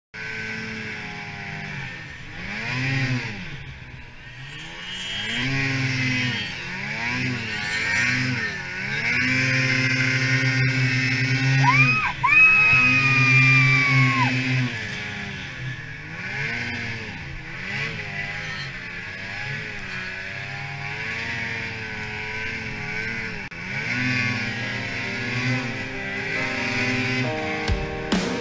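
Ski-Doo XM snowmobile engine under throttle in deep powder, revving up and easing off every couple of seconds and held at high revs for a few seconds near the middle. About twelve seconds in, a higher whine rises and then slowly falls away.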